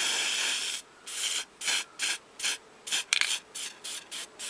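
Aerosol spray paint can hissing as its nozzle is pressed: one longer spray, then a series of short bursts about two a second.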